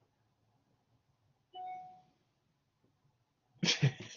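Near silence, broken about one and a half seconds in by a short, faint steady tone lasting about half a second. Near the end a man starts to laugh.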